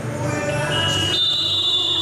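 Basketball scoreboard buzzer sounding: a high, steady electronic tone that comes in just under a second in, grows stronger about a second in, and holds.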